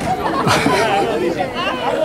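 Several people talking over one another in loose, overlapping chatter.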